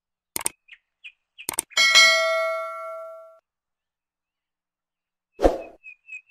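Subscribe-button animation sound effect: two quick clicks, then a bell-like ding about two seconds in that rings out for a second and a half. A short thump comes near the end.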